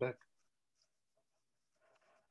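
The end of a spoken word, then near silence on a video-call audio line, with a faint soft noise near the end.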